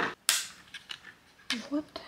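Sharp plastic snap from a hanging bathroom anti-mould fragrance dispenser being handled, about a quarter second in, followed by small ticks and a fainter plastic click a little before the end.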